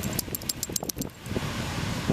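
Wind rumbling on the microphone, with a quick run of light clicks or jingles in the first second.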